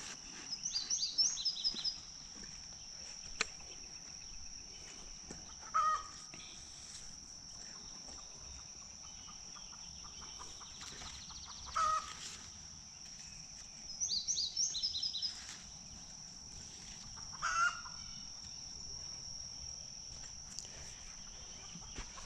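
Outdoor garden ambience: a steady high insect drone, like crickets, with birds calling over it. There are two bursts of rapid high chirps, one about a second in and one around the middle, and three short, lower calls spaced about six seconds apart.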